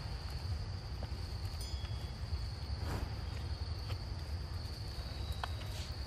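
Insects trilling steadily at one high pitch, over a constant low rumble, with a few faint clicks.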